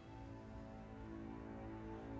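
Background film score: soft held notes, with a new, lower chord coming in at the start.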